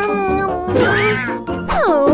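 A cartoon character's wordless voice sound over background music; the voice rises and falls in pitch about halfway through.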